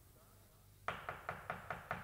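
Six quick, even knocks on a door, about five a second, starting about a second in.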